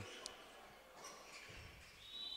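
Near silence: faint sports-hall ambience, with one brief faint high-pitched sound about a quarter of a second in.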